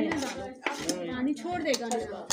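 A metal knife and spoon clinking and scraping against a steel bowl and a wooden chopping board, with several sharp clicks.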